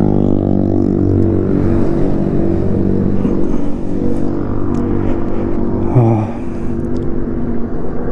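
Motorcycle engine slowing down, its pitch falling steadily as the bike decelerates and pulls over.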